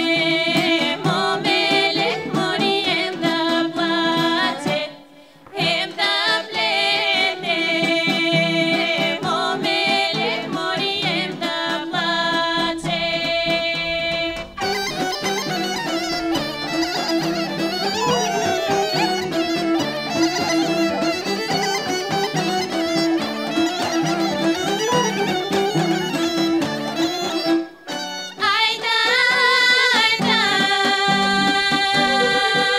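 Two women singing a Bulgarian folk song in harmony over instrumental accompaniment, with a short pause in the singing about five seconds in. About halfway through the voices stop and the instruments play an interlude; the singing comes back near the end.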